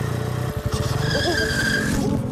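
A motor vehicle's engine runs with a rapid low rumble. About a second in a tyre squeal sets in and holds for most of a second.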